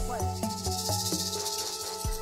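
Background music with a steady low beat under held tones and a high hiss.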